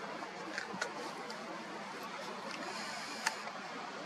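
Faint steady hiss with a few small clicks and taps from a camera being handled as its lens zooms in, the sharpest click about three seconds in.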